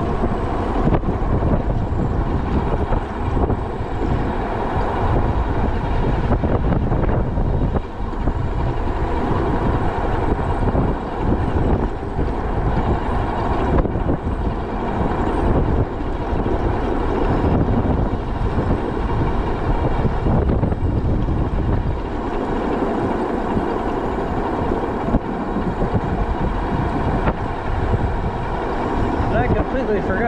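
Wind buffeting the microphone of a moving e-bike over its tyre and road noise: a steady, loud rumble.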